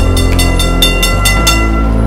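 Bell of a heritage electric tram rung in rapid strokes, about seven a second, stopping about one and a half seconds in, over background music.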